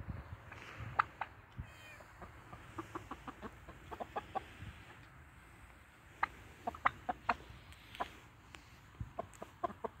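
Chickens clucking softly: short, scattered clucks that come in small runs.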